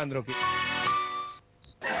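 A short held musical note, then a regular run of high cricket chirps, about three a second, starting in the last half second.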